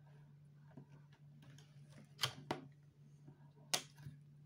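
Three sharp clicks, two close together a little past halfway and one near the end, as buttons are pressed to power on a laptop and time its start-up, over a faint steady low hum.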